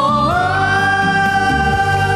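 Vietnamese pop duet sung live over a backing track: a voice slides up into one long held note, over steady bass and drums.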